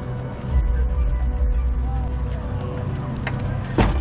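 Car-meet crowd noise: music with deep bass, background voices and vehicle sounds mixed together, with a sharp knock near the end.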